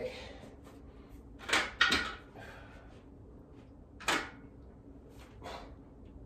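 Short, forceful breaths blown out in a few bursts of effort during one-arm dumbbell rows, the loudest pair about one and a half to two seconds in.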